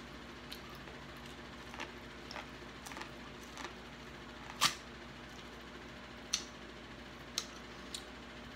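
Close-up eating of sauce-coated corn on the cob: scattered wet mouth clicks and smacks from biting and chewing, the loudest a little past halfway, over a faint steady hum.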